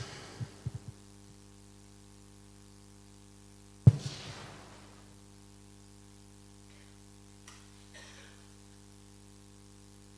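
Steady electrical mains hum from the church's sound system while the microphone is open. A single sharp thump about four seconds in rings out briefly in the room, and a few faint clicks come near the start.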